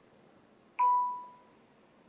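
A single electronic notification chime about a second in, one clear tone that fades out over about half a second, as a new notification arrives on the devices.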